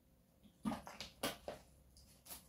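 A person gulping water from a plastic bottle: four short, loud swallows about a quarter second apart.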